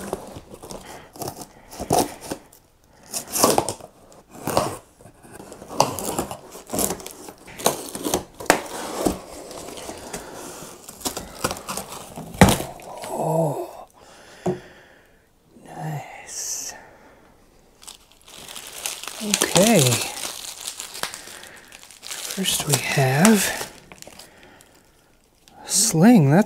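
A cardboard shipping box being opened by hand: packing tape slit with a pocketknife and ripped, cardboard flaps pulled open, and plastic and bubble wrap crinkling as they are handled, in many short sharp rips and rustles. A man's voice comes in a few times without clear words.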